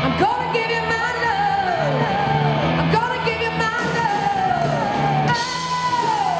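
Live rock band playing, a female lead singer belting held notes that slide down in pitch over electric guitar, bass and drums. The sound changes abruptly about five seconds in.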